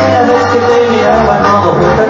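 Loud amplified music from a live band, with a bass line moving from note to note under sustained melody tones.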